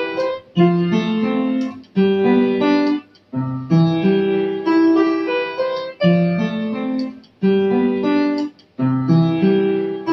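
Upright acoustic piano played with both hands: a melody over chords in short phrases of about a second and a half, each separated by a brief break.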